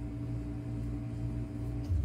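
A steady hum made of a few constant low tones, cutting off abruptly just before the end.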